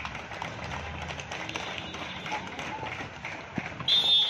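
Crowd noise with many scattered taps and foot scuffs during a kabaddi raid and tackle, then a referee's whistle blows loudly near the end, signalling the end of the raid.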